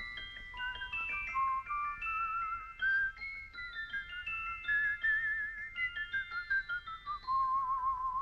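Small musical box playing its tune, a quick run of high, plucked, chiming notes. A wavering held melody line sounds over the notes, with a long one near the end.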